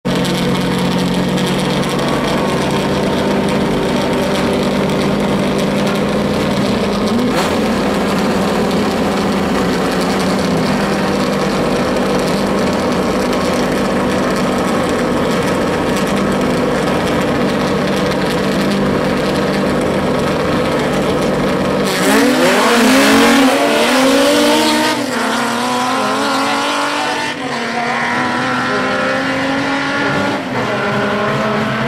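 Two drag-racing cars idling loudly at the start line. About 22 seconds in, both launch at full throttle, engine pitch climbing and dropping several times with gear shifts as they pull away down the strip.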